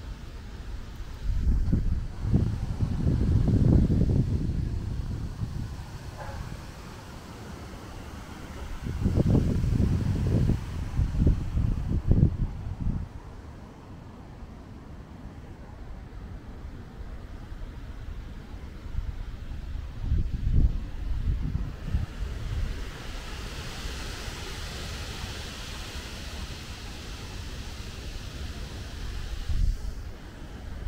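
Wind gusting across the microphone outdoors, in three rough, rumbling bursts over a steady background rush.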